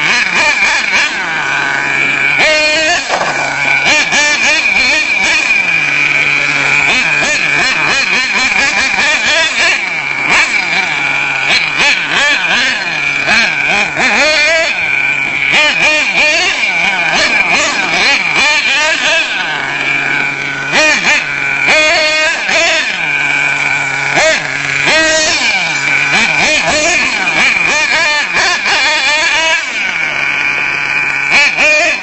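The small nitro engine of an HPI Savage 25 RC monster truck revving up and down again and again as it is driven, a high-pitched buzzing whine.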